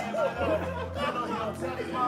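Indistinct voices of several people talking, over music playing in the background with a steady bass line.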